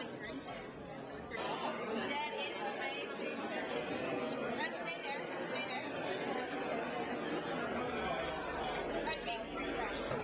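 Indistinct chatter of many people talking at once, a little louder from about a second and a half in.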